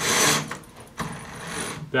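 Metal bead chain of a roller-shade clutch rattling as it is pulled through the clutch, twice: a short run at the start and a longer one from about a second in that begins with a click.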